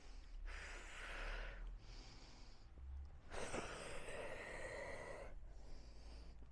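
Faint breathing of a woman doing a squat-to-stand warm-up: three audible breaths, the last and longest about two seconds.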